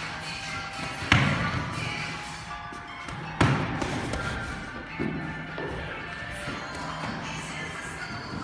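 Punches in boxing gloves landing on the coach's gloves, three sharp slaps about a second, three and a half and five seconds in, the first two loudest, over background music playing in the gym.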